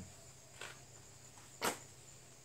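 A single sharp click from the suppressor and pistol being handled as the suppressor is checked for loosening, with faint rustling before it.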